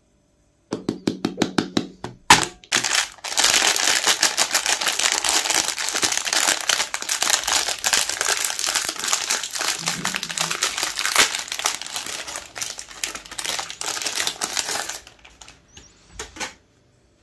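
Metallised plastic wrapper of a Magnum ice cream bar being torn open and crinkled by hand. It starts with a second or so of separate quick crackles and a sharp snap, then becomes dense, continuous crinkling that dies away just before the end.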